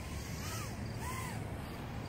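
Faint whine of a KingKong 110GT micro brushless quad's motors heard from a distance, rising and falling in pitch twice as the throttle is worked, over a low steady rumble.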